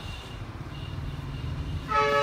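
Low steady rumble of passing road traffic, with a vehicle horn starting to sound near the end.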